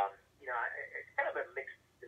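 Only speech: a voice talking over a telephone line, thin and narrow-sounding.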